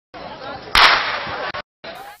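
A starter's pistol fires once, a single sharp crack about three-quarters of a second in that starts a sprint race, over a low background of crowd noise.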